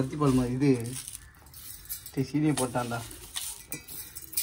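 A man talking in two short phrases, with light metallic clinks of a utensil against a stainless steel bowl in the pauses between them.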